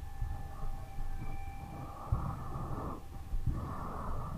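A person breathing audibly close to the microphone, two soft drawn-out breaths, with a few dull low thumps and a faint steady electronic hum underneath.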